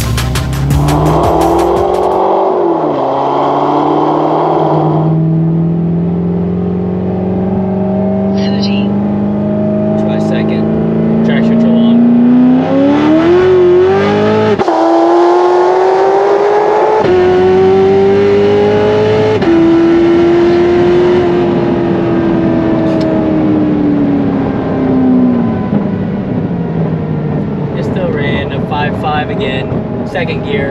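Supercharged LT5 V8 of a modified C7 Corvette ZR1 pulling hard under throttle. Its note climbs slowly, then steeply, and drops sharply at each of several upshifts before easing off and winding down in the last few seconds.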